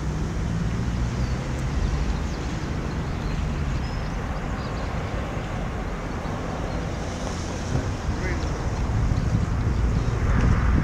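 Wind buffeting the microphone outdoors, a steady low noise.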